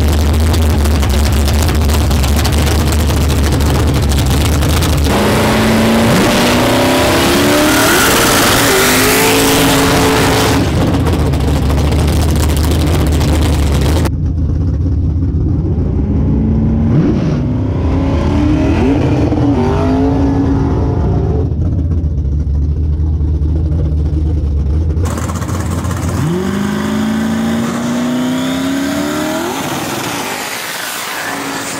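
Race-car V8 engines idling with a heavy low drone, then revved in repeated rising-and-falling blips. Near the end the revs climb steadily as a car builds up for a launch or burnout.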